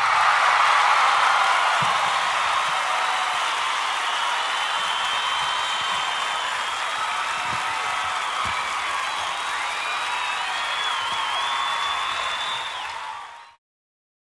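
A crowd applauding and cheering, with a few whistles, that fades out near the end.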